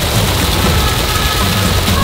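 Water spraying and splashing, a loud, dense, even hiss like heavy rain, over background music.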